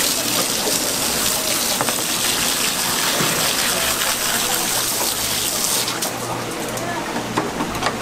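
Water sprayed from a hose spray nozzle onto seafood pieces in a plastic basket: a steady loud hiss that cuts off abruptly about six seconds in.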